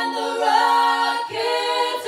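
Three women singing a cappella in close harmony, holding sustained chords and moving to a new chord about halfway through.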